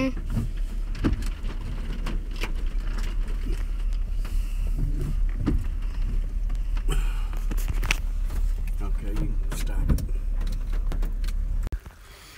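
Truck driving slowly over a rough, washed-out dirt track: a steady low rumble with frequent knocks and rattles as it jolts over ruts, cutting off abruptly near the end.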